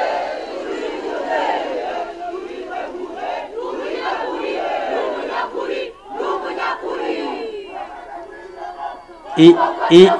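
A large crowd shouting and cheering together in response to the speaker. The sound dips briefly about six seconds in and then swells again. A man's amplified voice comes back in near the end.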